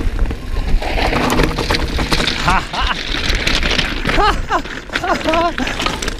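Orbea Rallon mountain bike descending loose rocky scree: tyres crunching over stones and the bike clattering and rattling without a break. Short wordless voice sounds from the rider come several times in the second half.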